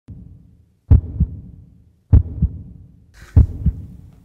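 Intro sound effect of a heartbeat: three deep double thumps, each a strong beat followed by a softer one, about 1.2 s apart over a low hum.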